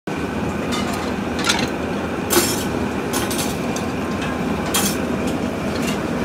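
Ceramic plates, bowls and metal cutlery clinking together as dirty dishes are handled in a plastic tub: several sharp clinks, the loudest about two and a half seconds in and near five seconds. Under them runs a steady low background rumble.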